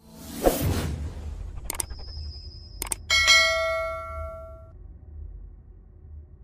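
Subscribe-reminder animation sound effects: a whoosh, two clicks about a second apart, then a bell-like ding that rings out for about a second and a half over a low steady hum.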